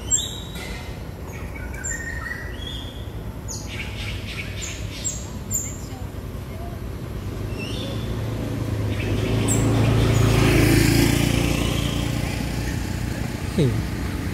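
Short, high-pitched animal chirps and squeaks, several of them in the first six seconds, each falling in pitch. Around the middle a rushing noise with a low hum swells up, peaks about ten seconds in, and fades.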